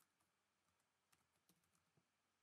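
Near silence with a few faint computer-keyboard keystrokes, two of them a little clearer about a second and a half second later.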